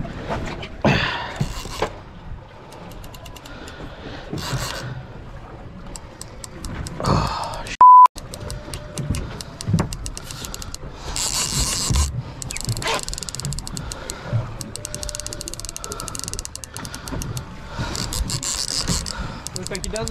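Heavy saltwater fishing reel ticking rapidly in long runs while a big shark is fought on the line. A short, loud steady beep about eight seconds in.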